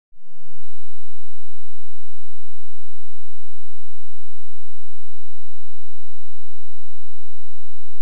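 A loud, steady electronic tone made of several unchanging pitches held together. It swells in over the first half second and holds without any variation.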